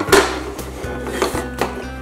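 Wooden toy train track pieces knocking against each other and the tabletop as they are handled and fitted together, a sharp clack just after the start and a few lighter knocks later, over background music.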